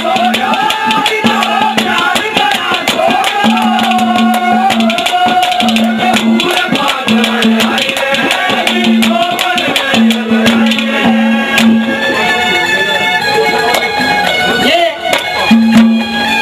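Live Haryanvi ragni music: a melody line bending in pitch over a fast, dense beat of hand drums and jingling percussion, with a recurring held low note underneath.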